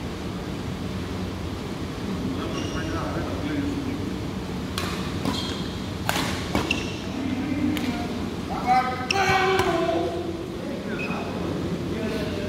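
Badminton rackets hitting a shuttlecock during a rally: several sharp hits between about five and eight seconds in, over a steady hall hum. Players' voices call out a little after the hits.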